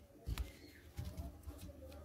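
Pigeons cooing faintly in the background, with two soft low bumps of hands handling a crocheted doll close to the microphone, about a third of a second in and again at one second.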